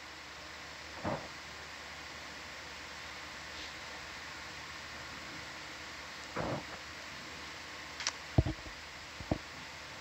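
Steady hiss of background noise, broken by a few short clicks and knocks, most of them in the second half.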